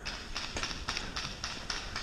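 Running footsteps on grass, a quick regular beat of about four strides a second.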